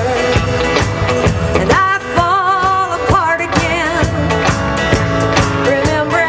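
Live band playing: a drum kit and guitars, with a woman's lead vocal, sung with vibrato, coming in about two seconds in.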